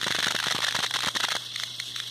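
Dense, irregular crackling clicks over a steady hiss and a faint low hum, thinning out a little in the second half.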